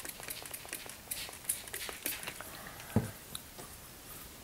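Trigger spray bottle misting water onto watercolor paper to wet it: a series of short, faint hissing squirts, with a single knock about three seconds in.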